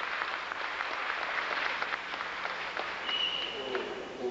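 An audience applauding at the end of a talk: dense, steady clapping that thins toward the end, with a brief thin high tone and a man's voice starting up near the end.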